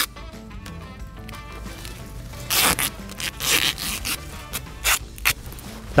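Tape being pulled off the roll in several short rips and wrapped around a hose at a sewer cleanout to seal the joint.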